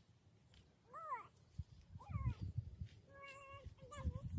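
Short high animal calls, about four of them: an arching cry about a second in, a falling one about two seconds in, and a flat held one just after three seconds, with low rumbling noise from about two seconds in.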